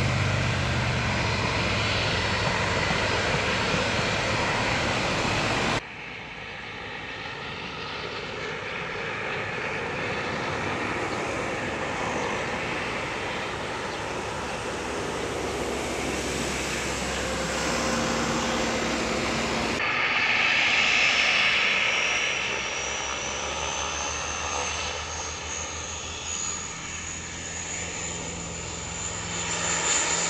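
Bombardier Dash 8-Q200 twin-turboprop airliner with both engines and propellers running as it taxis. The sound jumps abruptly twice, about six and twenty seconds in. From about twenty seconds in, a high whine climbs steadily as the engines spool up on the runway for takeoff.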